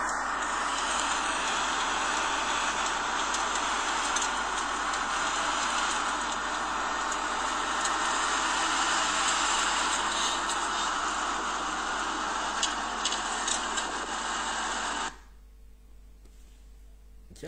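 Steady rushing road and traffic noise recorded from a moving vehicle, with a few faint clicks; it cuts off suddenly near the end.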